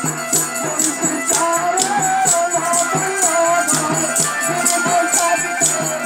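Live Bengali village folk song: a man sings through a microphone and small amplifier, backed by an electronic keyboard, a drum and jingling hand percussion keeping a steady beat of about two to three strikes a second.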